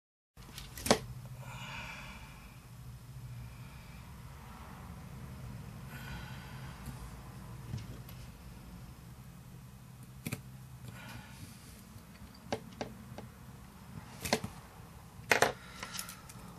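Small tool-and-parts handling noises from a hex screwdriver and carbon-fibre RC helicopter frame parts: a sharp click about a second in, then scattered light ticks and taps in the last few seconds, over a low steady hum.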